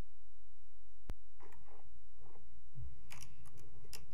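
Desk and chair handling noise picked up by a desk microphone: one sharp click about a second in, faint rustling, a low bump, then a few small clicks near the end, over a steady low hum.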